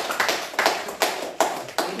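Hands clapping in a steady beat, about three claps a second, stopping just before the end.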